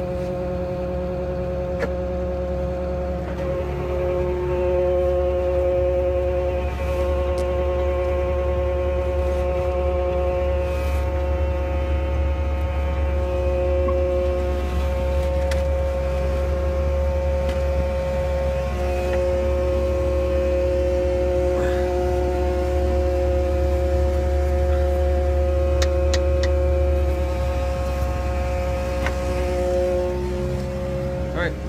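Bay-Lynx volumetric concrete mixer running steadily while producing a dry mix: a low engine rumble under a steady mechanical whine. It gets louder about three or four seconds in and then holds.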